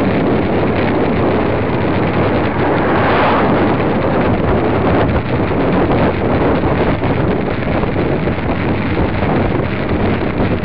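Wind rushing over the microphone of a camera mounted on a moving road bicycle, a loud steady rumble that swells briefly about three seconds in.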